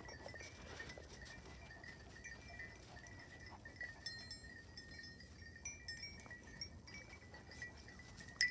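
Small bells worn by a group of walking dogs, jingling faintly and irregularly: many short overlapping rings.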